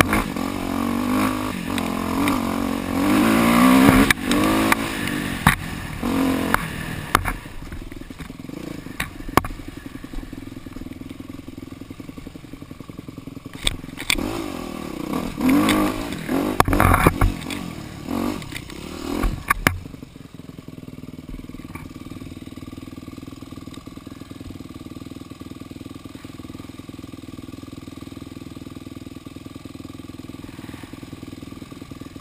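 Dirt bike engine revving and falling back in bursts as it is ridden along a wooded trail, with sharp knocks and clatter from the bike over rough ground. About two-thirds of the way in, it drops to a steady idle as the bike stops.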